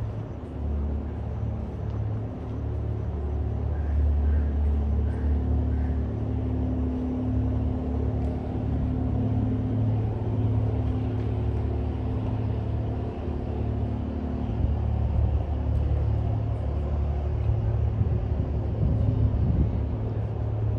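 Steady low rumble of outdoor city ambience with a faint hum, and a few faint high chirps about four to six seconds in.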